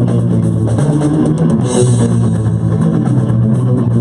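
A live rock band playing without vocals: electric guitars, bass guitar and drum kit, with a crash of cymbal about halfway through.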